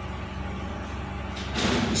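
Steady low background rumble and hum, with a loud, short hiss near the end.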